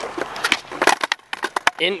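Skateboard rolling on concrete, with a series of sharp clacks and knocks from the board.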